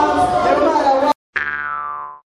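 Voices and room sound from the stage cut off abruptly about a second in. After a short gap, a single edited-in electronic tone, rich in overtones, starts suddenly, holds one pitch and fades out as the end card begins.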